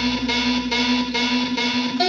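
Dance workout music with a steady beat of about three strokes a second over a held note; the deep bass drops out near the end.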